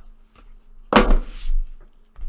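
A trading-card box and cards being handled with gloved hands: a thump and a short scraping rustle about a second in, with a few faint clicks around it.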